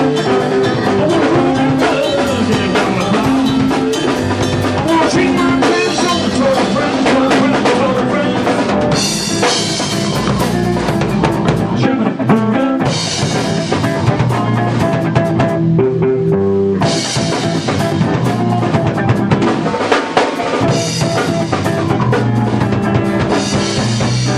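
Blues-funk rock band playing an instrumental passage on drum kit and electric guitar. The cymbals drop out briefly around the middle.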